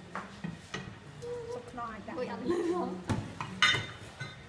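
Metal forks clinking and scraping against a white ceramic bowl as shredded cabbage and carrot coleslaw is tossed, a few separate clicks at first and a louder, sharper clatter near the end.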